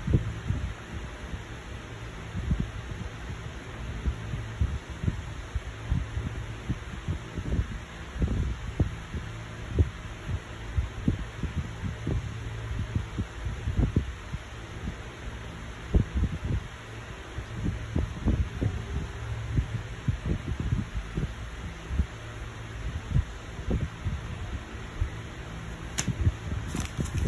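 A steady low hum with many irregular soft low thumps.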